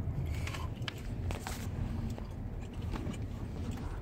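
Steady low rumble of a car cabin, with a few faint clicks and rubs from a phone being handled and moved.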